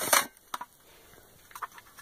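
Handling of a tin-plate Marx toy diesel locomotive as it is lifted out of its cardboard box: a short rustle at the start, a light click about half a second in, and a few faint clicks near the end.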